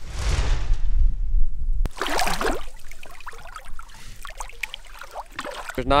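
Water splashing as a redfish is released by hand at the surface, with a sharper splash just after two seconds.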